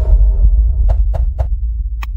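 Logo sting sound effect: a deep bass boom that slowly fades, with three quick clicks about a second in.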